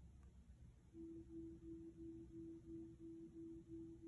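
iPhone 11 Pro Max Face ID enrolment tone: a faint, low, steady hum pulsing about three times a second. It starts about a second in as the second face scan begins, after a faint tap.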